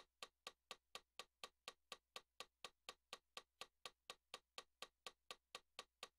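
Metronome clicking faintly and evenly at about four clicks a second.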